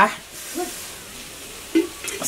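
A pause in speech: faint steady hiss of background noise, broken by two short voice sounds, one about half a second in and one near the end.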